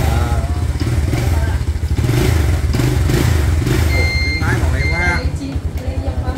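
A small motorcycle engine idling steadily. Two short, high-pitched beeps sound about four and five seconds in.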